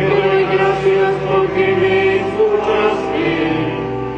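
Choir singing a slow liturgical chant, with long held notes that change pitch about once a second.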